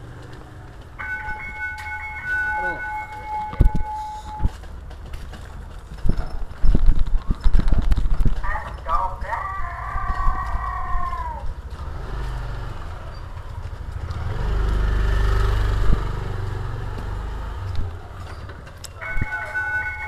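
Low rumble of a vending cart on the move, with rattling knocks as it jolts along. A steady high tone sounds for about three seconds near the start, and a voice calls out around the middle.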